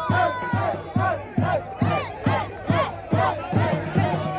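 A celebrating crowd shouting and cheering over loud music with a heavy, steady beat of about two thumps a second.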